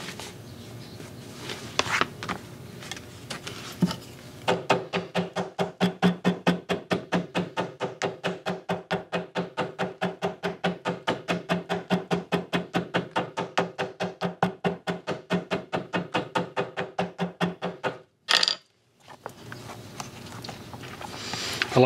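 Small hammer tapping rapidly and evenly, about six light blows a second, along a contact-cemented seam to press a tooled leather panel onto a leather purse body on a granite slab. Each blow gives the same short, ringing knock. The tapping starts about four seconds in after a few handling knocks and stops shortly before the end, followed by a brief sharp scuff.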